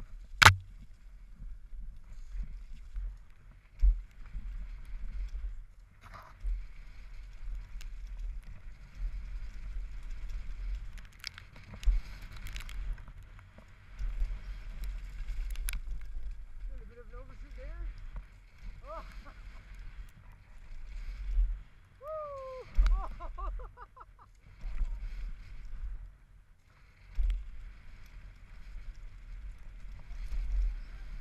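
A downhill mountain bike ridden fast down a wet dirt trail, heard from a helmet camera: a steady low wind rumble on the microphone, with tyre noise on the dirt and scattered rattles and clicks from the bike. A sharp, loud knock comes about half a second in.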